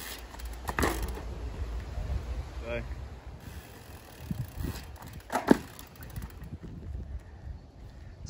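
Mountain bike rolling on a dirt road over a low steady rumble, with a few light knocks and one sharp knock about five and a half seconds in, fitting the bike landing from a bunny hop.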